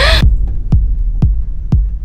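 Electronic trailer score: a deep steady bass drone with a kick drum that drops in pitch, hitting about twice a second. A short rising sound comes right at the start.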